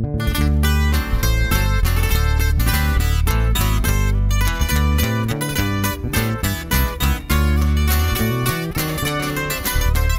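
Instrumental intro on a twelve-string acoustic guitar picking a quick lead over an electric bass line, with no singing.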